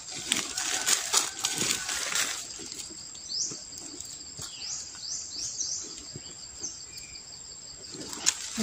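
Bare hand scraping and digging into dry, stony soil and leaf litter, with rustles and small knocks for the first two seconds or so, then quieter. A bird gives several short rising chirps in the middle, over a steady high thin whine.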